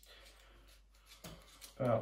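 Faint scraping of a small blade paring a strip of peel from a lemon.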